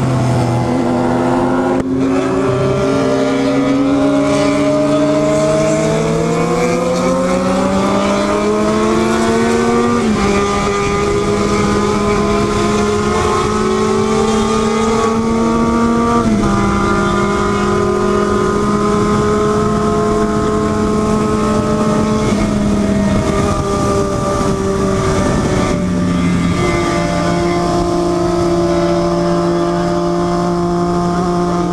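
Motorcycle engine pulling through the gears while riding, recorded on the bike with wind rushing past. The pitch climbs for about ten seconds, drops with an upshift, climbs again and drops with a second upshift, then holds at a steady cruise with a brief easing off near the end.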